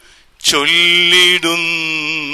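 A man singing solo into a microphone, holding long notes with a wide vibrato; after a brief pause for breath, a new note comes in strongly about half a second in, and he moves to the next held note near the middle.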